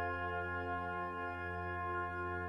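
Wind band holding a sustained chord, with the notes steady and unchanging.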